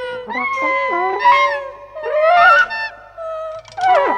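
Free-improvised jazz from a small group of wind, brass and voice. A held note gives way to several overlapping lines that bend and slide up and down in pitch, in short phrases.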